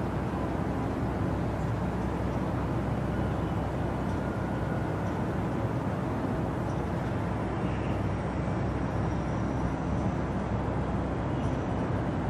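Steady low rumbling background noise outdoors, unchanging in level, with a few faint high tones in the second half.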